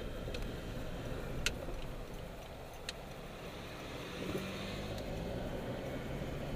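Car driving, heard from inside the cabin: a steady low engine and road rumble, with a few sharp clicks or rattles, the loudest about one and a half seconds in.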